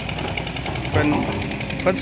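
Engine-driven water pump running steadily with a rapid, regular beat as it pumps water out of a muddy ditch to drain it for catching fish.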